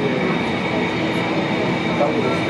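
Steady airport-terminal background noise: an even mechanical rumble with thin, constant high tones running through it, with no change.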